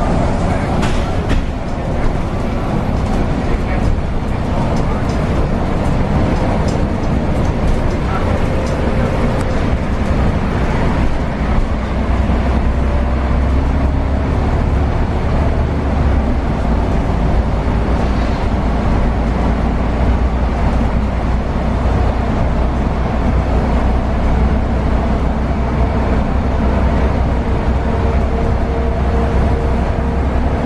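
Mercedes-Benz O405NH city bus under way, heard from inside the cabin at the front: engine and drivetrain running steadily with road and tyre noise, and a faint steady whine.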